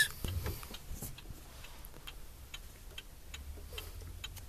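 Hazard-warning flasher in an Iveco lorry cab ticking steadily, about two clicks a second, over a low steady hum.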